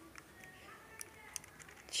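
A few faint, small plastic clicks from handling a Sony HDR-AS20 action camera with its memory-card door open as the memory card is pushed out of its slot; the clearest clicks come about a second in.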